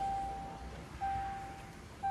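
Range Rover Evoque's in-car warning chime: a single steady tone that sounds about once a second, each note starting sharply and fading away.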